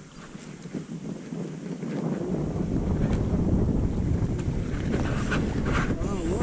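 Wind buffeting the microphone of a small boat on the river, a rumbling noise that builds up about two seconds in and then holds steady.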